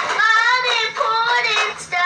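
A young girl singing in a high voice, holding short notes that slide up and down.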